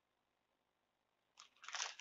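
Near silence, then about one and a half seconds in, a sheet of paper rustling and crinkling as it is picked up and handled.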